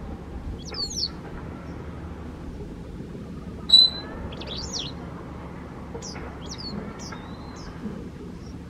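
Wagtail calls: short, sharp, high chirps in small groups, the loudest about four seconds in.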